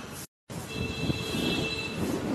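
Outdoor background noise: a steady low rumble carrying two thin, steady high-pitched squealing tones. The sound cuts out completely for a moment just after the start, then returns louder.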